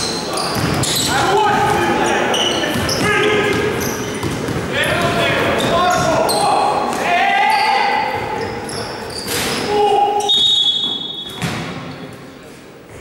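Players' voices calling out during a basketball game in a large gym hall, with a basketball bouncing on the court.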